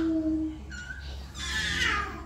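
A young child's voice into a microphone: a held vowel sound, then a short high note and a breathy, high-pitched squeal that falls in pitch in the second half.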